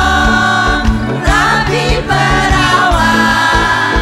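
A live band playing: long held melody notes over a steady bass line, with a few notes that slide in pitch.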